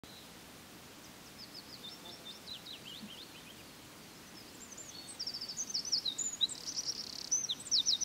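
Songbirds chirping and singing in a forest over a faint steady hiss: short, high, sliding notes at first, becoming louder and busier, with quick runs of repeated notes, from about five seconds in.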